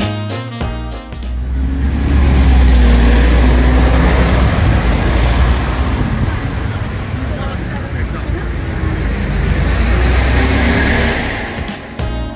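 Street traffic passing close by, buses and cars with a deep engine rumble and road noise, taking over from music that fades out about a second in.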